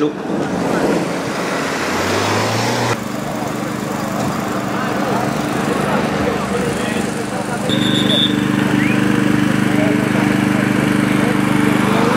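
A motor vehicle's engine running at a steady speed over outdoor background chatter. The engine hum becomes louder from about eight seconds in.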